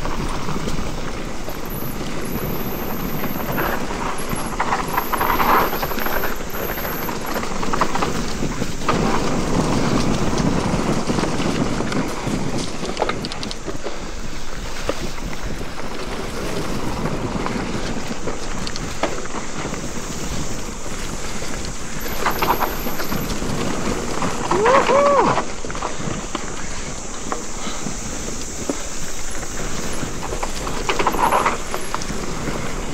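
Mountain bike riding fast down a dirt forest singletrack: a steady rush of tyres on dirt and wind on the microphone, with knocks and rattles from the bike over the rough trail. Near the end a brief pitched sound rises and falls.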